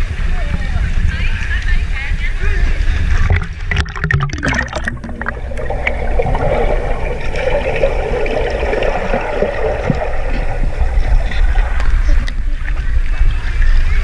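Pool water sloshing and splashing around a camera held half in the water, over a heavy low rumble; about four seconds in come a few splashes, and the sound then turns muffled while the camera is underwater.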